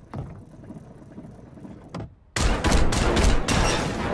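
Heavily processed cartoon-logo sound effects. There is a soft thump at the start, quiet low rumbling, then a brief cut-out about two seconds in. After that comes a loud, dense rattle of rapid bangs like gunfire.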